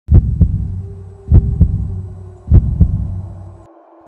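Heartbeat sound effect: three double thumps, lub-dub, about 1.2 seconds apart, over a low hum that cuts off shortly before the end.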